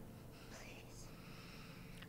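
Near silence: faint room tone with a trace of very soft whispering.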